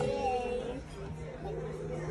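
Indistinct voices chattering, with a held voice note fading out in the first half second.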